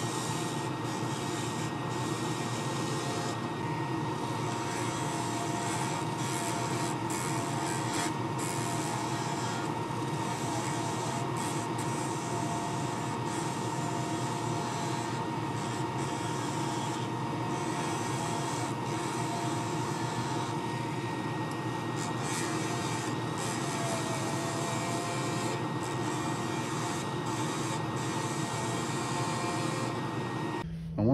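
Wood lathe spinning a laser-cut segmented wood pen blank, hardened with CA glue, at about 2,600 RPM while a skew chisel shaves it down. A steady cutting hiss runs under a constant high whine.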